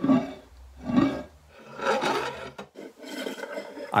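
A glazed ceramic plate scraped and rubbed around on a wooden tabletop under close microphones, in about four grinding strokes roughly a second apart. It is recorded as raw Foley for the sound of glass tiles.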